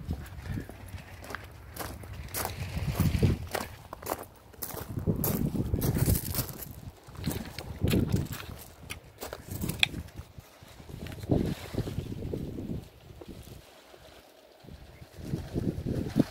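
Footsteps crunching on gravel, uneven and irregular, with knocks and rumble from a handheld camera being carried.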